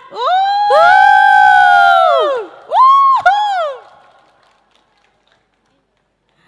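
Two high voices whooping long, overlapping "woo" calls that are held for about two seconds and then fall away, followed by one shorter rising-and-falling whoop about three seconds in: loud cheering.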